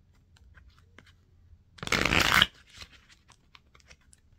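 A deck of tarot cards being shuffled: a short, dense riffle of under a second about two seconds in, with light card clicks and taps before and after it.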